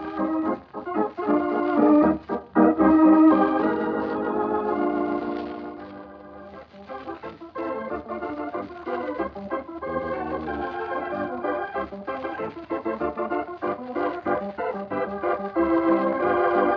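Organ music playing a wordless interlude: held chords that swell in the first few seconds, dip about six seconds in, then pick up again with shorter, busier notes. The sound is dull and narrow, as on an old radio transcription.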